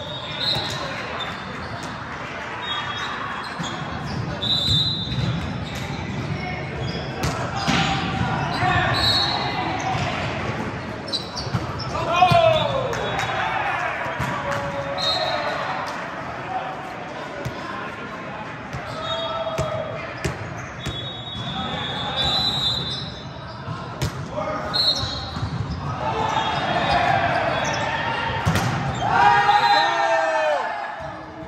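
Indoor volleyball play in a large, echoing gym: the ball is struck and hits the floor again and again, shoes squeak on the court, and players shout and call out. The loudest shouts come about twelve seconds in and again near the end.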